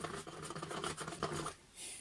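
A 12 mm socket unscrewing a brass fixing nut from a control shaft on a cassette multitrack's panel: a quick run of fine scraping and rasping for about a second and a half, then it stops.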